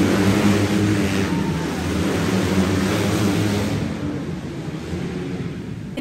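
Outlaw kart engines running on an indoor dirt track in a steady drone, easing off somewhat about four seconds in.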